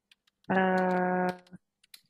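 Soft computer keyboard typing clicks. A long, level-pitched "uhh" hesitation from a woman's voice sits over them just after the start.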